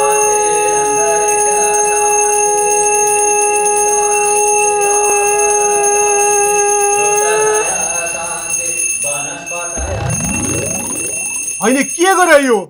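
Conch shell (shankha) blown in one long, steady note that breaks off about seven and a half seconds in, with a ritual bell ringing under it. Near the end, rising swooping sound effects come in.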